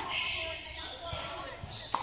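A tennis ball being struck in a rally: a sharp pop off the racket strings right at the start, and another sharp pop of ball on racket or court about two seconds later.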